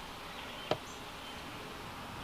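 Cooling fan of an ISDT T6 lithium battery charger whirring steadily while the charger pushes about 15.8 amps into the batteries.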